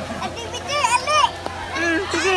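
Children's high-pitched shouts and calls while playing, two rising-and-falling cries in the middle and another starting near the end.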